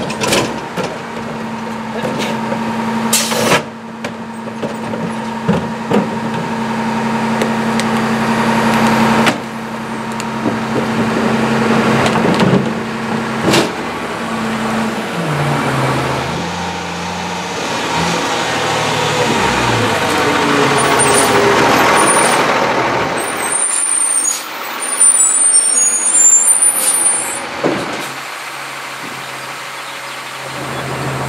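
A CCC integrated rear-loader garbage truck. Its engine and hydraulics run with a steady hum while the cart tipper dumps a cart, with several sharp clanks of the cart against the hopper. Later the engine changes pitch and grows louder as the truck moves off, with a high squeal near the end and air-brake noise, then settles to idling.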